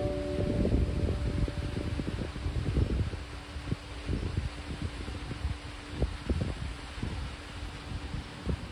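The last notes of a Langyun 130 cm travel-size guzheng ringing on and slowly fading out after the final pluck. Gusty wind buffets the microphone underneath.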